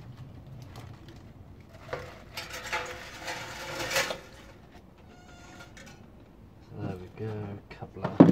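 A tangle of copper motor-winding wire tipped into a metal tin on a scale. It rustles and clinks, building from about two seconds in to a peak around four seconds, with a short metallic ring just after. A brief low voice comes near the end.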